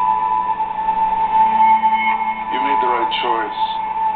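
Film trailer soundtrack played back: a steady high-pitched tone held throughout, with a short burst of speech about two and a half seconds in.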